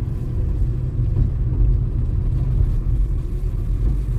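A car driving along: a steady low rumble of engine and road noise, with no sudden events.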